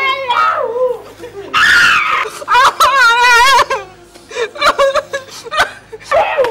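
People crying out in pain as they are whipped: loud screams and long wails whose pitch wavers, the longest about two and a half to three and a half seconds in, with a few sharp snaps near the end.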